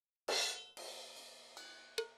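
Drum samples from FL Studio's FPC drum pad sampler, triggered one at a time by clicking its pads. A cymbal hit comes about a quarter second in and is cut short by a second cymbal hit, which rings and fades out. A short cowbell hit comes at the very end.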